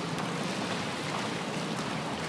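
Steady wash of water noise from an outdoor swimming pool, with swimmers splashing and the water lapping.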